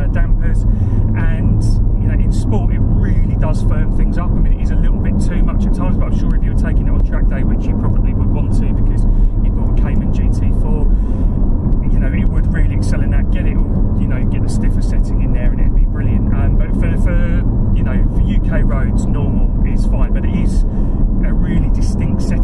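Steady low drone of the Porsche 718 Cayman GT4's mid-mounted, naturally aspirated flat-six and road noise heard inside the cabin while cruising, under continuous talking.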